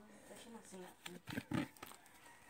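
Trading cards handled and sorted between the fingers, with two light snaps about a second and a half in, while a faint voice murmurs underneath.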